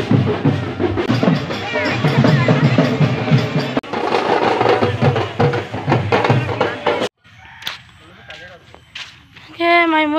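Street procession drum band playing snare and bass drums amid crowd voices, cutting off suddenly about seven seconds in. Then a few quiet clicks, and a woman starts speaking near the end.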